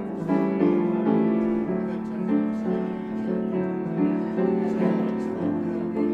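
Baby grand piano played live: full sustained chords under a melody, with a new chord struck every half second to a second.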